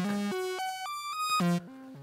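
Doepfer modular synthesizer playing a short sequence of pitched notes (A155 sequencer driving an A111 oscillator through an A121 multimode filter), stepping mostly upward in pitch and then down to a low note. About one and a half seconds in, the sound drops away to a faint low tone as the A174 joystick returns to center, where the VCA patch passes almost no signal.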